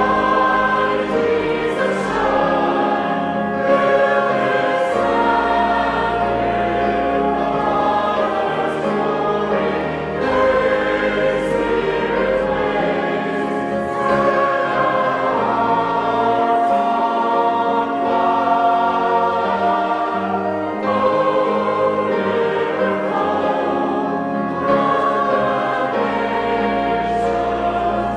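A church choir and congregation singing a hymn together, in sustained phrases a few seconds long with brief pauses between lines.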